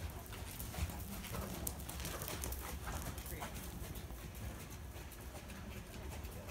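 A horse's hoofbeats on the sand footing of an indoor arena as it goes past close by, as irregular soft knocks.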